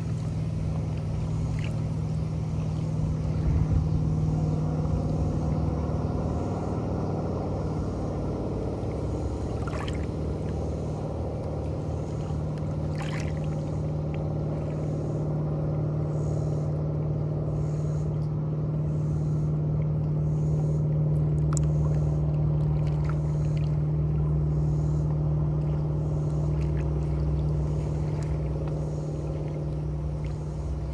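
Small waves lapping and splashing against shoreline boulders on a lake, under a steady low engine hum from a motorboat on the water, with a few sharper splashes.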